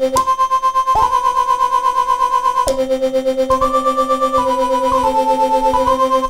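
Teenage Engineering OP-1 synthesizer playing its mono lead preset: held notes stepping between a few pitches, with a fast, even pulsing throughout.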